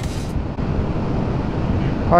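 Wind rushing over the microphone with road and engine noise of a motorcycle under way, with no clear engine note standing out. A music track cuts off right at the start.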